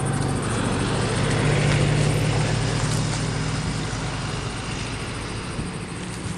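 A steady engine-like hum with a noisy wash over it, swelling about two seconds in and then slowly fading.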